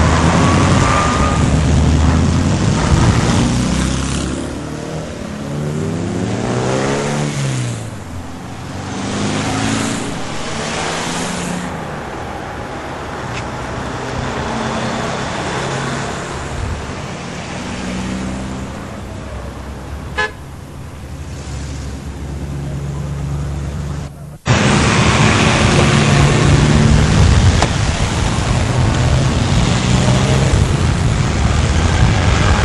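Classic cars driving past one after another with their engines running, one engine's pitch rising and falling about seven seconds in, and car horns tooting. About 24 seconds in the sound cuts out for an instant and comes back louder.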